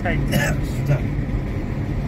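Steady low road and engine noise heard inside the cabin of a moving car, with a brief voice near the start.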